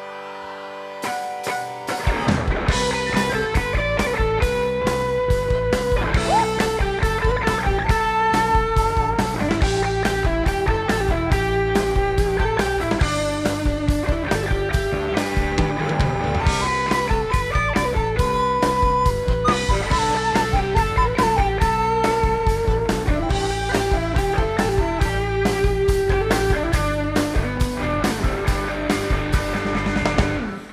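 Live rock band launching into an instrumental intro: after a brief held tone, drum kit, electric bass and electric guitar come in together about two seconds in and play on with a steady beat.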